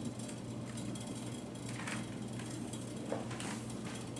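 Quiet room tone with a steady low hum, broken by a few faint soft clicks and rustles.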